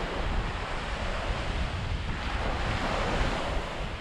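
Sea surf washing on a shingle beach, with wind rumbling on the microphone; the wash swells for the second half.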